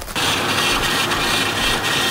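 A 2002 Nissan Xterra's supercharged 3.3-litre V6 running steadily, heard close with the hood open, with its freshly replaced Eaton M62 supercharger fitted. It comes in suddenly just after the start.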